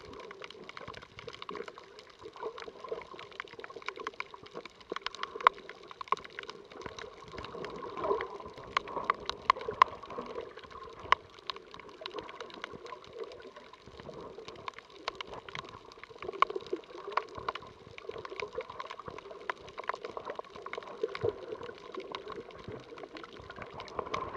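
Underwater sound picked up by an action camera over a shallow coral reef: muffled water movement with many scattered sharp clicks and crackles.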